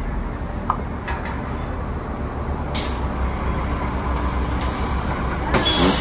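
City transit bus running at a stop with a steady low engine rumble. Its air system hisses briefly about three seconds in and again near the end as it comes to rest with its doors open.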